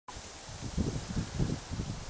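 Wind gusting across the microphone, an uneven low rumble over a steady hiss.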